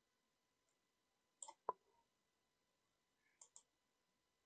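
Faint computer mouse button clicks: a quick pair about one and a half seconds in, then a sharper single click, and a double click near the end.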